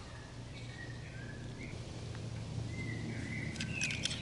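Faint bird whistles over a steady outdoor background noise. A few light metallic clicks near the end come from the steel locking collar of an Opinel folding knife being worked off.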